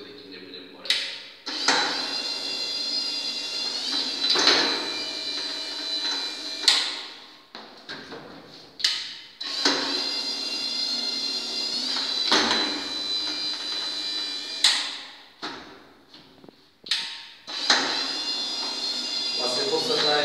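Yack N910 wheeled stair climber's electric motor whining through three step-climbing cycles, each about five seconds long. Between the cycles there are short pauses marked by sharp clicks and clunks as the wheels lift and set down on the next step.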